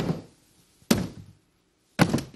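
One thunk, about a second in, as a clear plastic box of balloons is banged against a model artery, dying away within about half a second.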